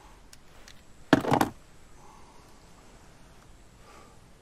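A brief cluster of sharp clicks and knocks about a second in, from an object being handled inside a car's cabin, against quiet interior room tone.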